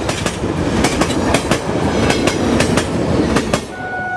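A rolling rumble with many irregular sharp clattering clicks, like wheels running over rail joints. Near the end, a steady horn begins.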